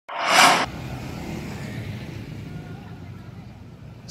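A brief, loud rushing burst right at the start from a TV news ident sound effect, followed by a steady low rumble that slowly fades.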